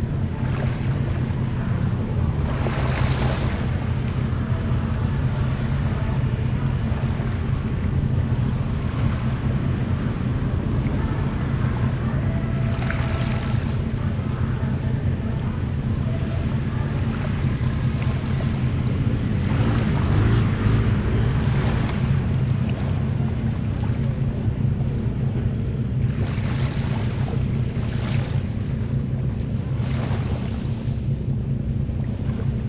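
Small sea waves washing in every few seconds, each a soft hiss, over a steady low rumble of wind on the microphone.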